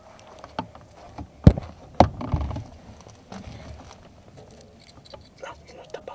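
Two sharp knocks about a second and a half and two seconds in, followed by scuffing and scattered small clicks: handling noise as the camera is brought down close to a metal-treaded step.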